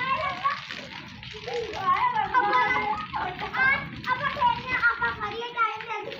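Several children playing, with high-pitched shouts and excited calls overlapping one another. The voices grow busier about a second and a half in.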